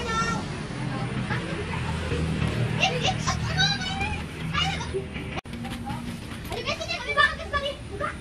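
Background children's voices, calling and chattering at play, over a low steady hum.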